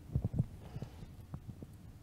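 Handling noise: several soft low thumps and a few small clicks over a faint low hum.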